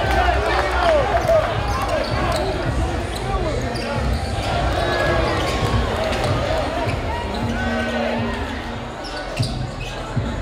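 Live game sound in a gym: a basketball bouncing repeatedly on the hardwood floor, with voices of players and spectators echoing around the hall.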